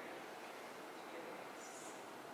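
Faint, steady room ambience: an even background hiss with no distinct source. There is a short high squeak near the end.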